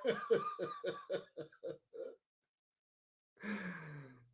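A man laughing: a run of about ten short, quick bursts of laughter over two seconds, growing fainter and trailing off.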